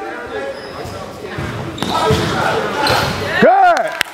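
Gym hubbub of voices with a basketball bouncing on a hardwood court, then a loud, drawn-out shout whose pitch rises and falls near the end.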